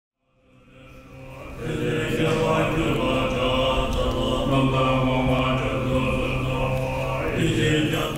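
Tibetan Buddhist monks chanting a puja in low voices. The chant fades in over the first couple of seconds, then holds long notes that shift pitch a couple of times.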